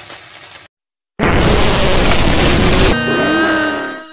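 Cartoon bomb: a faint fuse hiss, a moment of silence, then a loud explosion about a second in that lasts nearly two seconds. Near the end a fading tone with gliding pitch takes over.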